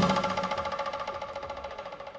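Last ringing of West African drum ensemble music, a pitched tone with a fast, even rattle, fading steadily away over two seconds after a loud stroke.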